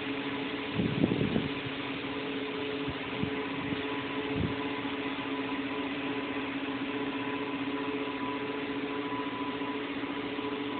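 Steady hum of cell-site equipment, a mix of fan noise and a few constant tones, with several short thumps in the first five seconds.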